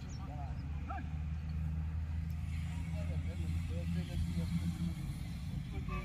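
Voices of people talking and calling in the distance over a low, steady hum.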